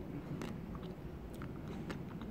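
A person chewing small, very thin chocolate hearts from the top of an ice cream, with a few quiet crunchy clicks.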